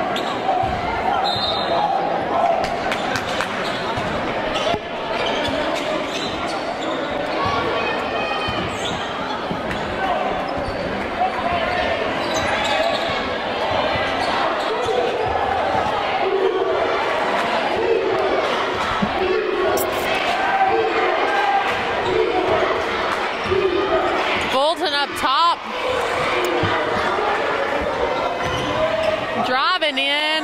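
A basketball being dribbled on a hardwood gym floor, its bounces echoing in the hall, with crowd voices going on throughout.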